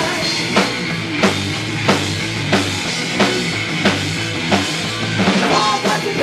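Live punk rock band playing an instrumental passage with no singing. The drum kit is the loudest part, with a strong hit about every two-thirds of a second over a held bass note and guitar.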